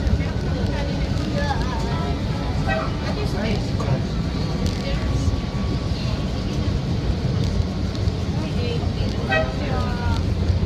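Elevated rail train pulling out of a station, its running gear giving a steady low rumble. Faint voices sound over it a little after the start and again near the end.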